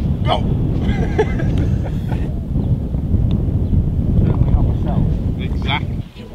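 Wind buffeting the microphone, a steady low rumble, with faint, indistinct voices.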